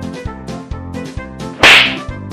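Upbeat comedy background music with a steady beat; about one and a half seconds in, a loud, short hit sound effect, a noisy crack lasting about a third of a second, is laid over it as one boy grabs the other.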